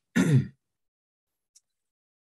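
A man's short throat-clearing sound, about half a second long and falling in pitch, then silence with one faint click.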